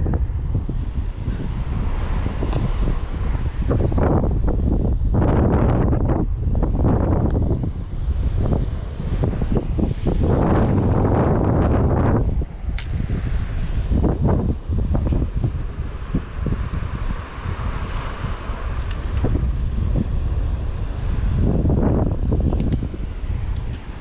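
Wind buffeting the microphone in uneven gusts, over the wash of surf.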